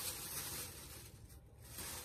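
Rustling of clothing and a bag being rummaged through, strongest at the start and again near the end.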